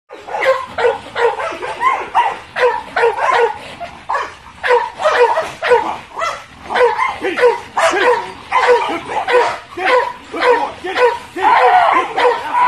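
A large dog barking repeatedly and excitedly, about two barks a second, without a break, as it lunges against its leash toward a bite sleeve.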